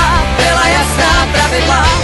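A band's rock song playing: a singer's wavering voice over a steady bass line and drums.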